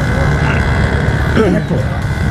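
Motorcycle engines idling in a slow-moving queue, a steady low rumble that includes the camera bike's Yamaha XJ6 inline-four, with people talking nearby.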